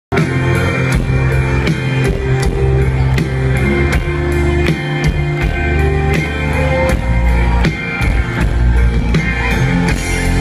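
Rock band playing live, electric guitars, bass and drum kit, in the instrumental opening of the song before the vocals come in, with a steady drum beat. Heard from within the audience.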